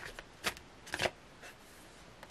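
Tarot cards being handled as a card is pulled from the deck: two short, sharp card snaps about half a second apart early in the first second, then faint rustling.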